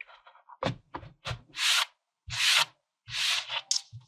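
Hands pressing and rubbing kinetic sand into a plastic tub: a series of separate gritty swishing strokes, several with a soft thud beneath.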